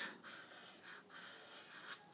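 Sharpie marker drawing on sketchbook paper: faint scratchy strokes with brief breaks between them as short curved lines are drawn.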